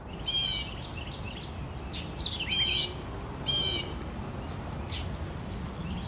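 A songbird calling in the trees: a short high chirping phrase repeated about three times over a low steady background rumble.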